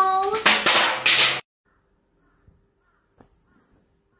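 A young child's voice crying out: a drawn-out, wavering cry, then two short, harsh cries, cut off abruptly about a second and a half in.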